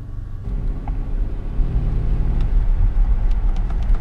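Low rumble of a Mercedes-Benz S-Class heard inside its cabin as the car pulls away, stepping up about half a second in and growing louder a second later.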